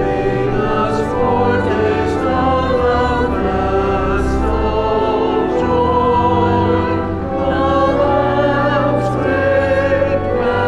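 Church choir singing a slow communion anthem, with sustained low bass notes held underneath.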